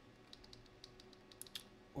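Faint computer keyboard typing: a quick, irregular run of about a dozen light key clicks that stops about three-quarters of the way through.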